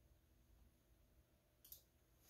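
Near silence: faint room tone with a low hum, and a single faint computer mouse click near the end.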